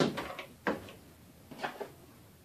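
A few short knocks and clicks of hands handling a plastic trash can lid, one about two-thirds of a second in and a couple more near the end.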